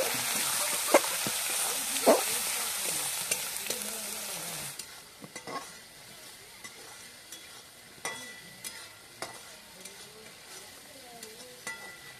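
Sliced onions and spice powder frying in oil in an aluminium kadai, with a loud sizzle and a metal spatula stirring and knocking against the pan twice. About five seconds in the sizzle drops to a faint frying sound, with occasional spatula clinks on the pan.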